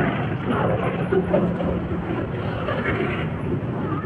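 Steady street traffic noise from a roadside, with faint voices underneath.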